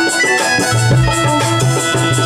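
Instrumental interlude of Bengali Bhawaiya folk music: sustained melody lines over a steady drum beat.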